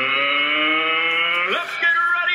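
A man's voice holding one long sung note that creeps slightly up in pitch, then slides higher about one and a half seconds in.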